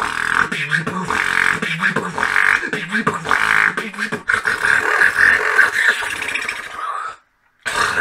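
A beatboxer making vocal percussion mixed with pitched vocal tones. It breaks off into a short silence about seven seconds in and starts again just before the end.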